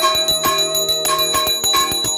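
Brass puja hand bell rung rapidly and without pause, its ringing tones overlapping, with a long lower tone sliding slowly down in pitch underneath.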